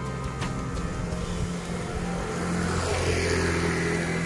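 A motor vehicle's engine running on the road, growing louder in the second half as it comes closer.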